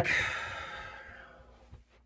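A man's long, breathy sigh or exhale that fades away over about a second and a half.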